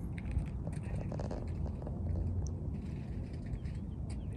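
Wind rumbling on the microphone, with a few faint short sounds above it.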